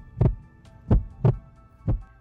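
Background music: sustained chords over a low, heartbeat-like beat of thumps in an uneven long-short rhythm, about a pair a second. The thumps stop at the very end while the chords carry on.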